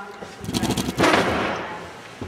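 Handling noise on the camera's microphone: a quick rattle of clicks, then a loud rustling knock that fades within about a second.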